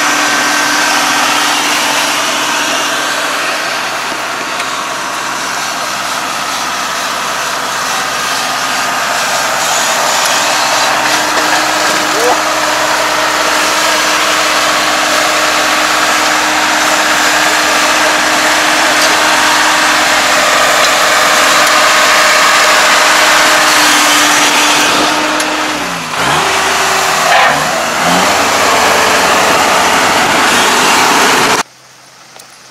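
Kubota ARN460 crawler combine harvester running steadily as it drives along and then down into a rice paddy. Near the end its engine note dips and sweeps back up, then settles again.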